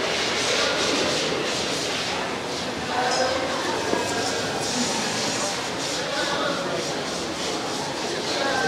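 Indistinct chatter of people in a large indoor hall, over a steady noisy hiss, with no single voice standing out.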